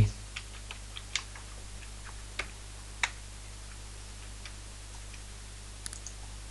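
Computer keyboard keys being typed in a few scattered, irregular clicks, most of them in the first three seconds, over a steady low electrical hum.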